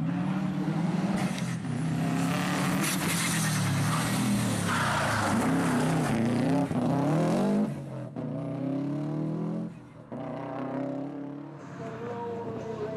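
Rally car driven hard through a corner, its engine revving up and dropping back again and again as it shifts gear. After about eight seconds the sound falls away to a quieter engine note.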